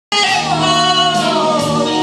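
Women singing karaoke into microphones over a recorded backing track, the voice holding long notes that bend in pitch. It starts abruptly just as the sound begins.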